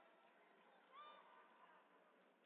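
Near silence: faint sports-hall room tone, with one brief, faint, high-pitched shout from a distant person about a second in.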